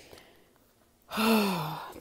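A woman sighing once, about a second in: a breathy, voiced sigh that falls in pitch.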